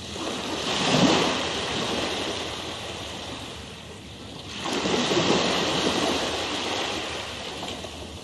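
Rushing water noise like surf washing in, swelling twice about four seconds apart.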